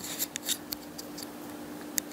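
Fingers handling a small plastic wireless mini microphone: light clicks and rubbing in the first second, then a quieter stretch, and one sharp click at the end. A faint steady hum runs underneath.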